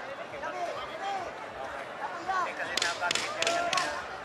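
Crowd of spectators talking, and about three seconds in, four sharp smacks in quick, uneven succession, from gloved punches landing in a flurry.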